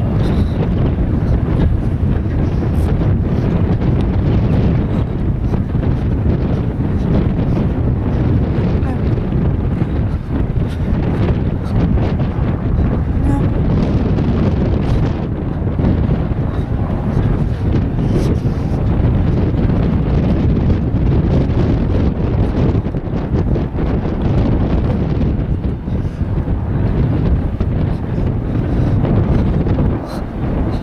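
Wind buffeting a handheld camera's microphone: a loud, steady low rumble.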